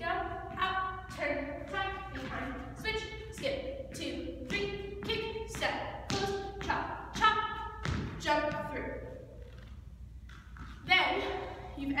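Thumps and taps of a dancer's soft shoes landing on a studio floor during an Irish dance reel step, with a sharp thud about eight seconds in, under a voice talking or calling rhythmically.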